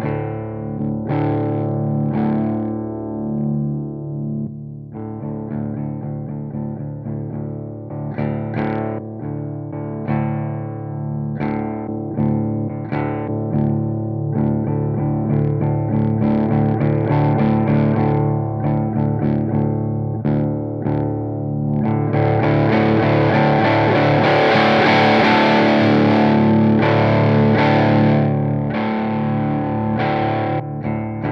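Electric guitar played through a JHS Morning Glory V4 overdrive pedal into a clean amp channel: ringing chords with light overdrive. As its tone and drive knobs are turned, the sound shifts, growing brighter and more driven about three-quarters of the way through.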